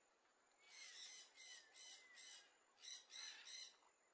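Faint bird calls in a quick series: four calls, a short break, then three more.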